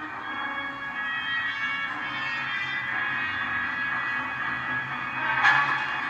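Orchestral film score with sustained, held chords, playing through a laptop's speakers.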